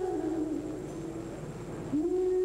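A woman's solo singing voice holding a long note into a microphone. The note wavers and slides downward, then fades out about a second in, leaving quieter backing underneath. A new held note begins just at the end.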